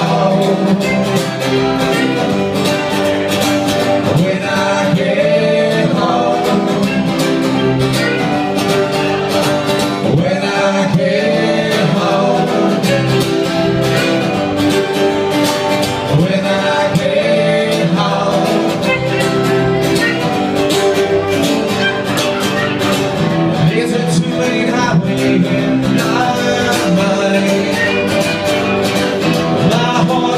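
Live bluegrass-style Americana band: acoustic guitars strummed with a fiddle, and male voices singing, one lead with another joining at a second mic.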